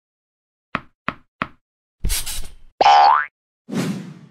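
Cartoon sound effects for an animated logo: three quick light taps, then a burst of noise, a short rising springy pitched glide, and a final noisy hit that dies away.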